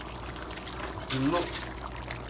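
Water poured from a glass jug into a pan of sliced onions, a steady trickling pour.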